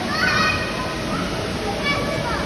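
Children playing: a child's high-pitched call rings out just after the start, and another brief one near the end, over a steady background noise.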